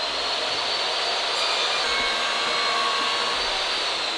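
A steady, even rushing noise with a faint whine in it, like air being blown by a motor.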